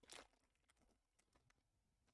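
Near silence, broken just after the start by a brief faint rustle of a foil trading-card pack being handled, then a few faint ticks.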